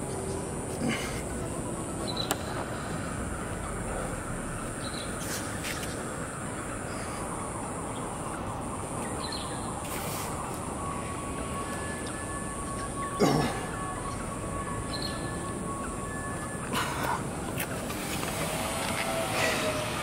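Steady outdoor background noise with a constant high hiss, a few faint bird chirps and several short knocks, the clearest about 13 seconds in; a faint steady tone sounds for a few seconds in the second half.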